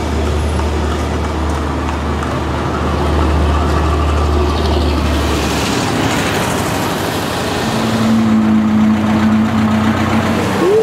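Cars running in street traffic, with a steady low engine rumble that cuts off a little past halfway. A steady held tone comes in near the end.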